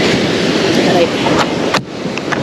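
Steady rushing noise of surf breaking on a beach, with a short sharp click near the end.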